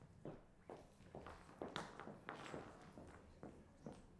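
Faint footsteps and light knocks on a stage floor as a person moves about and handles equipment. They come irregularly, two or three a second, with the sharpest knock just under two seconds in.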